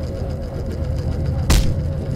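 A steady low rumble with a thin held tone over it, broken about one and a half seconds in by a single sharp impact.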